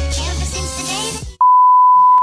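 Background music that cuts off abruptly about a second and a half in, replaced by a loud, steady single-pitch test tone, the reference tone played with TV colour bars.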